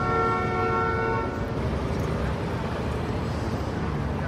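City street traffic noise with a vehicle horn sounding once, a held tone lasting about a second and a half at the start.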